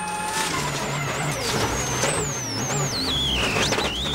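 Ford Focus RS WRC rally car's turbocharged four-cylinder engine and drivetrain at speed on a gravel stage. A high whine falls over about three seconds as the car slows into a corner, then rises again near the end as it pulls away.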